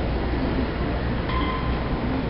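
Keikyu electric train running away from the platform, a steady rumble of wheels and motors, with a brief high squeal about a second and a half in.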